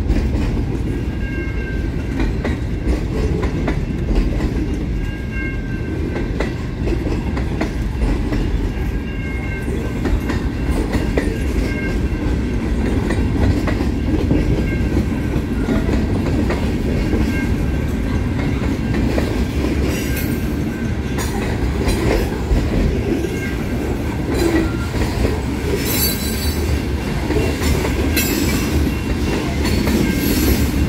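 Freight cars of a manifest train rolling past (boxcars, covered hoppers and tank cars): a steady rumble of steel wheels on rail with clickety-clack over the joints. Short, faint wheel squeals come in the first half, and sharper clicks come later on.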